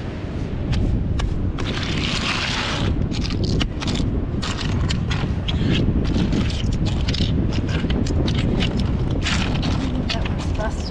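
Wind rumbling on the microphone, over many small sharp clicks of cockle (pipi) shells knocking together as hands spread a pile of them across a board.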